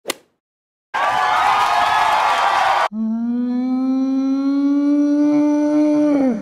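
An intro sound effect: a brief click, then about two seconds of a crowd cheering, cut off abruptly and followed by a single long held note that rises very slightly in pitch.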